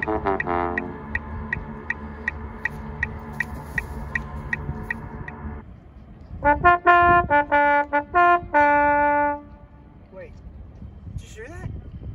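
Trombone playing a falling run of notes, then a steady sustained tone with a light ticking about four times a second. After a short gap comes a phrase of short, separate notes ending on a long held note.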